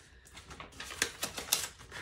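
Paper banknotes being pushed into a clear plastic zip envelope: a run of light crinkles and clicks from the bills and the plastic pouch.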